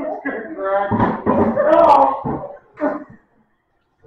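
A group of adults laughing hard, a woman's laughter loudest, for about two and a half seconds, with one more short burst of laughter near three seconds in.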